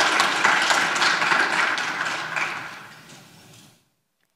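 Audience applauding, fading away over the last two seconds and cutting off just before the end.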